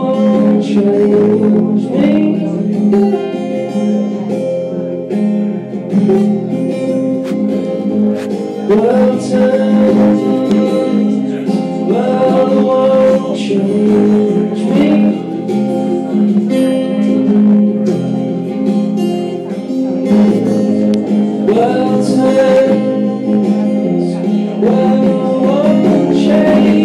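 Acoustic guitar strummed steadily through a live instrumental passage of a song.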